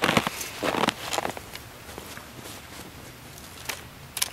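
Fabric rustling and handling noise as a blanket draped over a wire cage trap is moved, with a few light clicks; the rustling is strongest in the first second or so, then fades to scattered ticks, with one sharper click near the end.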